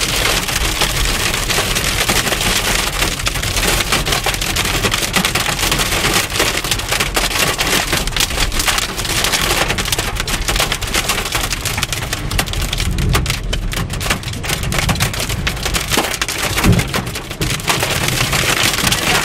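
Hail and heavy rain hitting a car's roof and windshield, heard from inside the car: a continuous, dense clatter of hard impacts over the hiss of the rain.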